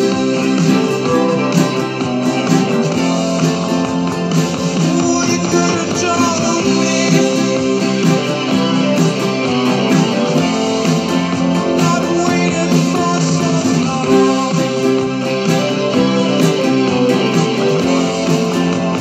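Nylon-string classical guitar with a capo, strummed steadily in a continuous chord pattern.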